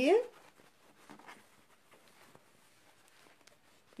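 Faint rustling of fabric handled on a tabletop as a pocket piece is pushed through a slit cut in the bag panel, with a slightly louder rustle about a second in. A voice finishes a word at the very start.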